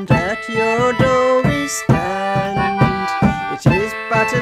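Instrumental break in an English folk song: a hand drum struck with a stick at a steady beat of about two strokes a second, under a held, sustained melody line.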